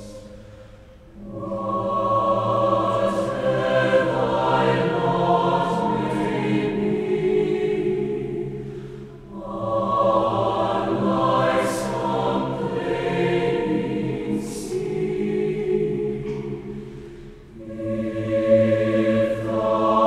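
A large combined choir of women's and men's voices singing a slow hymn, in long phrases with brief breaths between them: about a second in, around nine seconds in and shortly before the end.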